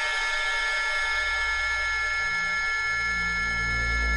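Sustained electronic drone chord from a film's background score, several steady high tones held together. A low bass drone swells in about a second in, and a second low tone joins a little after two seconds.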